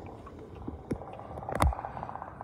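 Muffled water noise picked up by a camera held underwater, with a few knocks, the loudest about three-quarters through, followed by a fast crackle of ticks.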